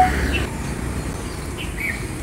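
Steady outdoor background hiss with a few short bird chirps: one about a third of a second in and two more near the end.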